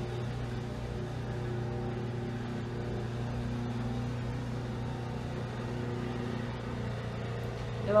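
A steady low mechanical hum with several fixed pitches, unchanging throughout, like a running appliance or room air-conditioning unit.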